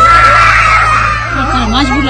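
A child screaming in distress while being forced into a car: one long, high scream over the first second or so, followed by raised voices.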